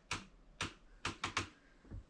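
A quick, uneven series of about six short, sharp clicks and taps.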